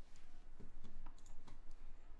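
A few faint, separate mouse clicks, spaced unevenly over about a second.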